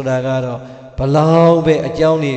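A Buddhist monk's voice intoning in a drawn-out, chant-like manner, holding long steady notes. There are two sustained phrases, the second and louder starting about halfway through.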